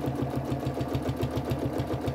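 Domestic sewing machine stitching steadily at an even rhythm of roughly nine stitches a second, sewing quilt binding through many layers of fabric and wadding.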